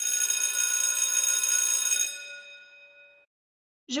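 A bell-like chime sound effect that starts sharply, rings with many steady overtones for about two seconds, then fades out, its highest notes dying first.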